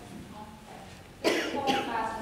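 Low room sound, then about a second in a sudden cough, followed by a voice starting to speak.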